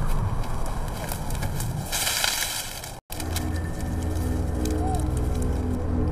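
Rustling and shuffling movement, with a brief hiss about two seconds in, cut off suddenly about three seconds in; after the cut a low sustained drone of tense background music.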